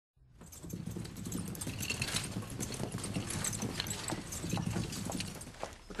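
Footsteps with the rustle and knock of shopping bags and boxes being carried into a room, a run of irregular clicks and knocks.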